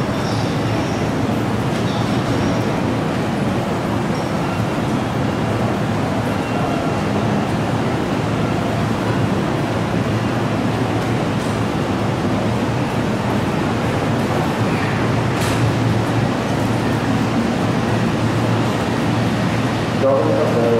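Seibu 6000-series electric commuter train rolling slowly into the platform and drawing to a stop, a steady running noise over the background of a crowded station. A short high hiss comes about three quarters of the way through.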